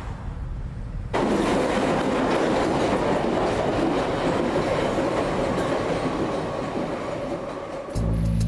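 London Underground train running along the tracks in the open cutting below. Its noise comes in suddenly about a second in and stays loud, easing slightly near the end.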